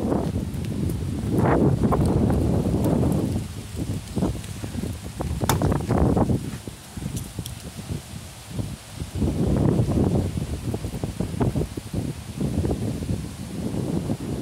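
Gusty wind buffeting the microphone in loud, uneven surges, with a few sharp clicks about five and a half to six seconds in.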